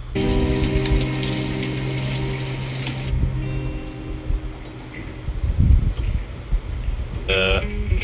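TV drama soundtrack: a sustained musical chord over a loud rushing hiss that cuts off after about three seconds, then quieter low thuds, with a brief voice-like sound near the end.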